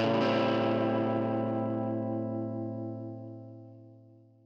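Outro music: a distorted electric guitar strikes a final chord right at the start and lets it ring, slowly fading away.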